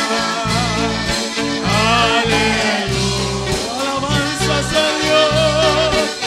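A live Spanish-language worship song: singing with wavering, held notes over instrumental accompaniment with a steady, repeating bass line.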